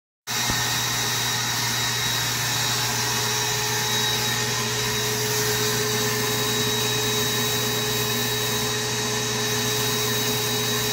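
Sandblasting cabinet in use: the blast gun gives a steady, unbroken hiss of compressed air and abrasive against a 10-inch diesel exhaust tip. The sound cuts in abruptly a fraction of a second in.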